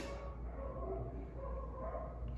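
Faint, whining animal cries: a string of short, thin pitched calls over steady room hum.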